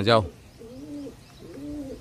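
Domestic pigeons cooing: two short coos about a second apart, each rising and then falling in pitch.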